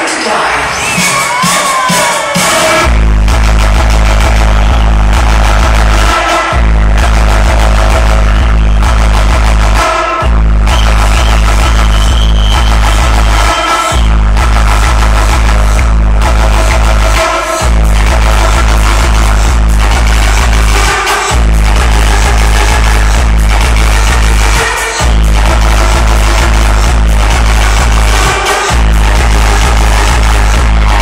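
Loud electronic dance music from a live DJ set over a PA. A heavy bass beat drops in about three seconds in and keeps going, with short breaks every few seconds.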